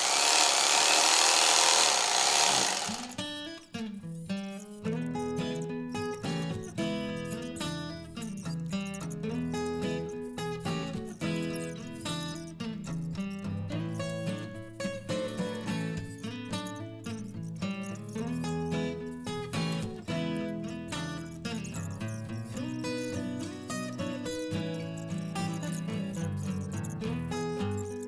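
A loud rush of noise for about the first three seconds, then instrumental background music with plucked, guitar-like notes.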